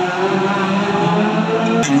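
Hatchback race car engines running at steady revs through a street-circuit corner, the engine note stepping down about a second in and back up near the end. A sharp click near the end.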